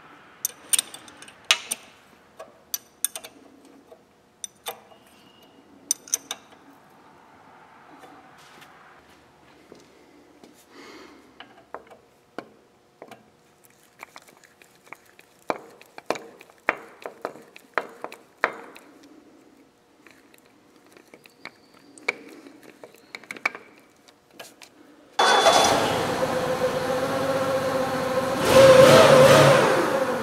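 Wrench and hydraulic hose fittings clinking on metal in a string of sharp, separate clicks as hoses are fitted to a forklift's steering cylinder. About 25 seconds in the forklift starts running, a loud steady sound that swells briefly near the end.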